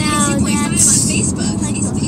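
Steady road rumble heard from inside a moving car on a wet highway. A child's voice speaks briefly at the start.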